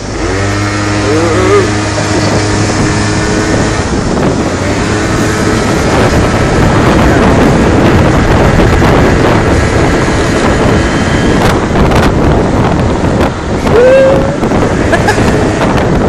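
Moped engine running at a steady pitch, then wind buffeting the microphone as the moped rides along, the rush taking over from the engine after about four seconds.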